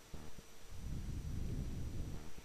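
Low, muffled handling noise: hands moving and rustling close to the microphone while a small remote control is fiddled with. There is a brief low hum near the start.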